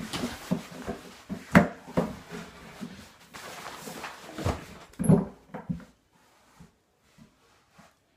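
Rustling and knocks of a fabric backpack being handled and lifted on a school desk, with one sharp thump about one and a half seconds in. The handling stops about six seconds in, leaving only a few faint ticks.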